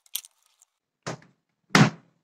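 Hinged lid of a Redmond RMC-M38 multicooker being shut: a light knock about a second in, then a louder, sharp clack near the end as the lid closes.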